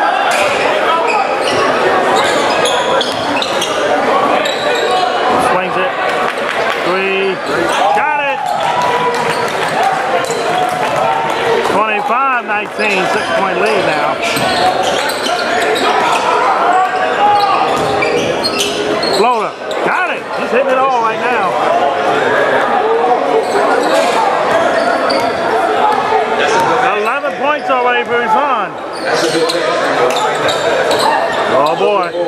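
Indoor basketball game: a ball bouncing on a hardwood court amid the voices of players and spectators, echoing in a large gym.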